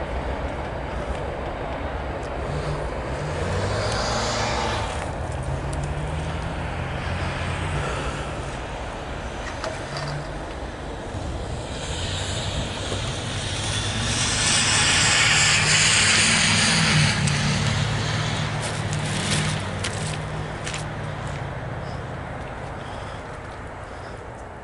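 A motor vehicle engine running with a steady low hum, with a vehicle passing that swells loudest about fifteen seconds in and then fades away.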